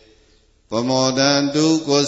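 A Buddhist monk's voice chanting Burmese verse on held, even notes. It starts after a short pause, about two-thirds of a second in.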